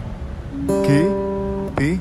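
Open G (third) string of a steel-string acoustic guitar plucked once by finger, ringing steadily for about a second before it is damped.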